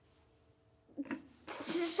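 A child's voice: near silence, then about a second in short breathy vocal sounds, followed by a loud hiss of breath from the mouth, the loudest sound here.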